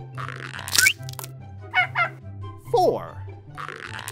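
Cartoon eggs cracking open with a crunch, each followed by short squeaky baby-dinosaur calls. One crack with a rising squeak comes shortly after the start, quick chirps follow around two seconds, then a falling call, and another crack comes at the end. All of it plays over light children's music.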